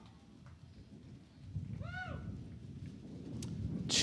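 A single short whoop about two seconds in, rising and then falling in pitch, heard faintly over a low steady rumble. A louder falling whoop begins right at the end.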